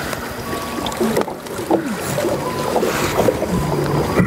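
Soft background music, and near the end a low rumbling vocalisation from a male western lowland gorilla: friendly 'talking' to the woman beside him.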